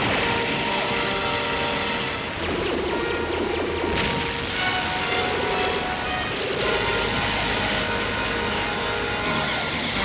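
Dramatic cartoon soundtrack music under a barrage of explosion and crash sound effects as a fortress is blasted, with a sharp hit about four seconds in.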